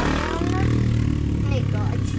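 Steady low rumble of a car's engine and road noise, heard from inside the moving car.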